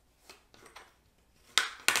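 Soft handling noises of folded cardstock, then two sharp clicks about a third of a second apart near the end as craft tools are picked up and set down on the cutting mat.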